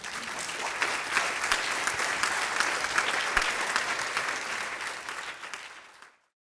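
Lecture-hall audience applauding: the clapping starts at once, holds steady, then thins out near the end.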